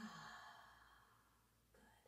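A woman's faint, audible out-breath through the open mouth, a soft sigh that fades away over about a second, with a short second breath near the end.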